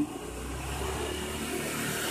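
Steady running of the 1976 Honda Benly S110's four-stroke engine at idle, an even, unchanging sound.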